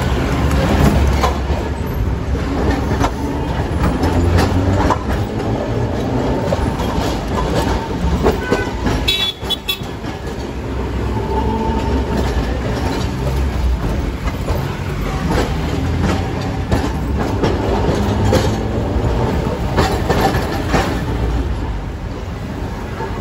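Electric tram car running along a street track: a steady rumble from wheels on the rails, with scattered clicks as the wheels cross rail joints. A short shrill sound comes about nine seconds in.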